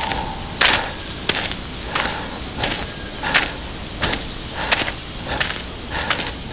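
Footsteps on a dirt road, a step about every two-thirds of a second, over a steady hiss.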